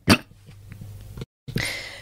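A man coughs once, sharply, into a close microphone. A moment of dead silence follows about a second later, then a breathy hiss near the end.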